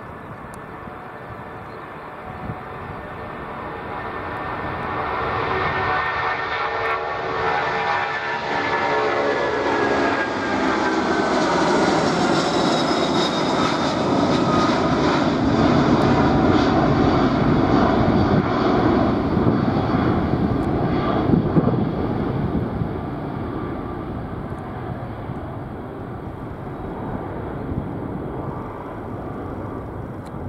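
Boeing 747-400 freighter's four turbofan engines at takeoff thrust as it lifts off and climbs away: whining engine tones fall in pitch as it passes, then a loud low rumble peaks around the middle and slowly fades.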